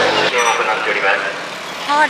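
Speech over outdoor background noise, with an abrupt change in the sound about a third of a second in.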